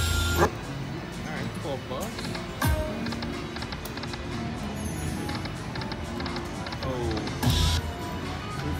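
Dragon Link Golden Century video slot machine playing its electronic reel-spin sounds and chiming tones. A louder burst comes as a spin starts at the beginning and another near the end, with falling tone sweeps in between, over a background of casino voices.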